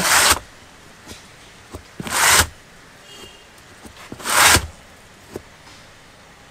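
Three short rasping strokes about two seconds apart: a hand rubbing or marking along the rubber sidewall of a used car tyre as it is marked out for cutting.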